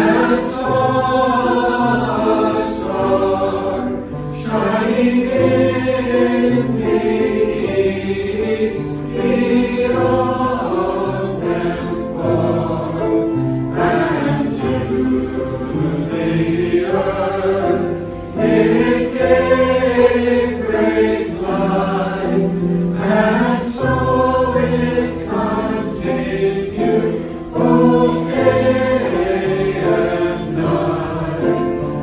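Mixed choir of men and women singing a Christmas carol, sung in long phrases with short breaks between them.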